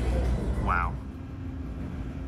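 Low rumbling room ambience with one short snatch of a voice about three-quarters of a second in, then a steady low hum.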